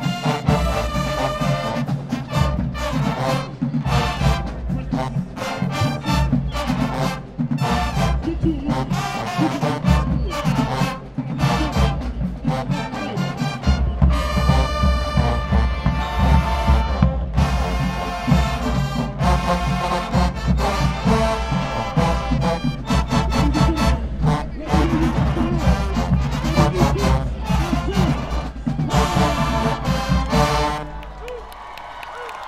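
Marching band playing a brass-heavy dance tune: horns over low brass and a steady, driving drum beat. The music breaks off at the very end.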